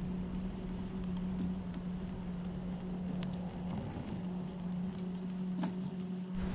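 A steady low hum over faint hiss, with a few faint ticks.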